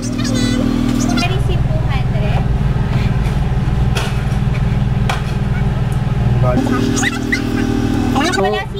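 Car engine idling, heard from inside the cabin as a steady low hum; its tone shifts about a second in and again near the end. Faint voices come over it.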